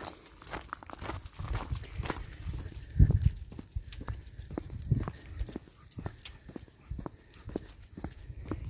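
Footsteps and irregular knocks and thumps of someone walking along a tarmac lane, over a low rumble.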